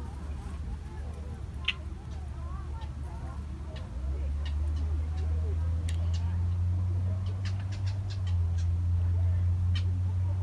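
A steady low hum that grows louder about four seconds in, with faint voices and scattered light clicks over it.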